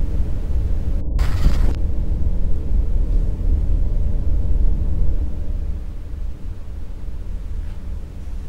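A deep, steady low rumble, with a short burst of noise about a second in; the rumble eases off after about five and a half seconds.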